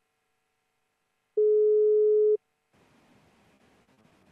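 A single steady electronic beep, about a second long, that starts and stops abruptly: the tone of a videoconference link as the dropped connection is re-established. Faint room noise follows.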